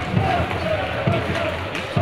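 Ice hockey arena sound during play: a crowd murmuring, with a few sharp knocks of sticks and puck on the ice.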